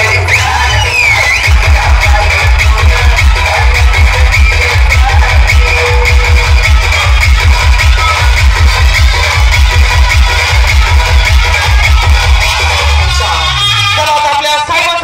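Loud electronic dance music from a DJ sound system, with a heavy, fast bass beat that kicks in about a second and a half in.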